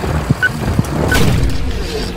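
Countdown leader beeps, two short high beeps about two-thirds of a second apart, one per count, over a loud, low rumbling backing track.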